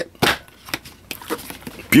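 Cardboard and clear plastic headphone packaging handled by hand as the box is opened: a sharp click a moment in, then faint rustling and a few light clicks.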